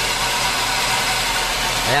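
Car engine idling with the clutch pedal held down, and a steady noise from the clutch release bearing that is there only while the pedal is pressed: the sign of a worn-out release bearing.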